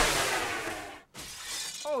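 A house window shattering, struck by a driven golf ball. The breaking glass is loudest at the start and dies away over about a second.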